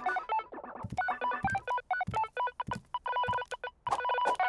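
Video game sound effects: a quick run of short electronic beeps at a few different pitches, with light clicks among them.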